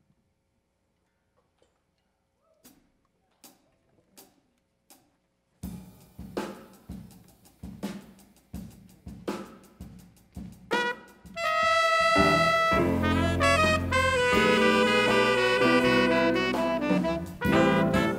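A few faint clicks, then a jazz ensemble starts: drums, piano, bass and guitars play alone for about six seconds before saxophones, trumpet and trombone come in together with held notes, much louder, in the second half.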